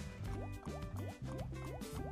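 Online slot game music playing as the reels spin, with short rising bubbly blips several times a second and light clicks over a steady bass line.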